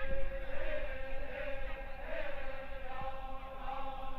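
Voices chanting in long held, slowly wavering notes.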